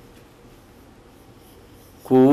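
Felt-tip marker writing on a whiteboard: faint scratching strokes of the tip as a letter is drawn.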